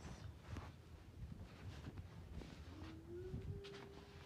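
Faint handling noise: fabric rustling and light knocks as a phone is moved about while the scarf is put on. A faint steady hum starts about three seconds in.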